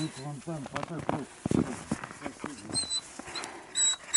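Russian hound whining as it begs for food, with low indistinct voices.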